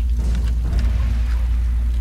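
Steady rain falling over a deep, steady low drone with faint held tones.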